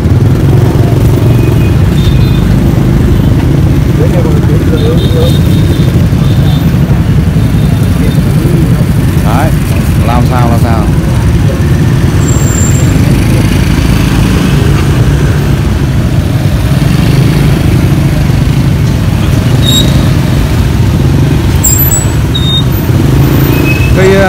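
Steady low rumble of street traffic with motorbike engines running close by, and voices talking faintly in the background now and then.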